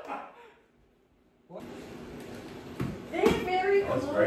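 A group's excited voices, cut off by about a second of dead silence near the start, then room noise with a faint knock or two before the shouting and exclaiming pick up again near the end.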